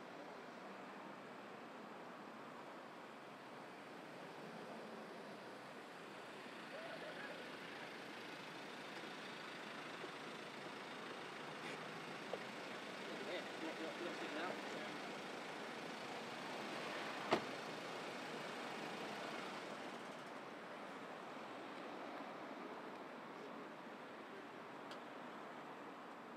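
Steady outdoor background noise with faint, indistinct voices in the distance. A single sharp click about two-thirds of the way through is the loudest sound.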